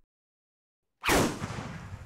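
Silence, then about a second in a sudden loud crash-like sound effect whose tone sweeps downward and fades away over about a second and a half.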